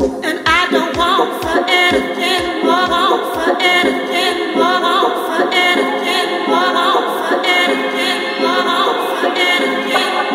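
Dance music played from a DJ set: layered sung vocals over chords with a steady four-on-the-floor kick drum, the kick dropping out about halfway through so that the voices and chords go on alone.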